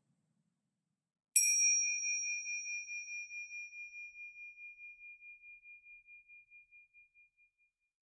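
A single strike of a small high-pitched meditation bell about a second in, its ring pulsing as it slowly fades away over about six seconds. It marks the close of the meditation.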